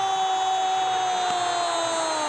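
Football commentator's long drawn-out goal cry: one held, shouted note that begins to slide down in pitch near the end.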